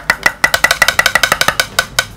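Rapid, irregular clinking of a hard object tapping and scraping on a porcelain plate as more cat food is pushed onto it, several sharp clinks a second, each ringing briefly.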